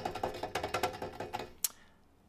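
A quick run of rapid, light percussive taps with a woody, pitched ring, stopping about a second and a half in, followed by a single short sharp click.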